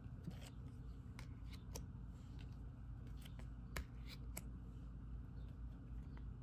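Faint clicks and soft slides of Visionary Enlightenment oracle cards being handled one at a time in a flip-through, the card edges ticking as they move against each other, over a low steady hum.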